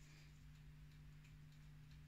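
Near silence: room tone with a faint steady hum and a few faint, irregular light ticks.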